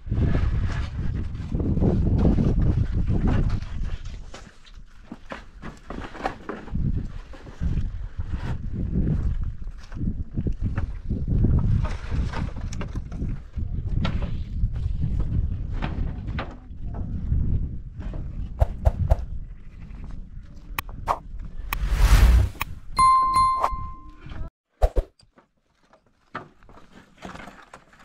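Knocks and clatter of wooden boards being worked on a plank outhouse, over a low rumble that rises and falls. About 23 seconds in, a short electronic ding chime sounds.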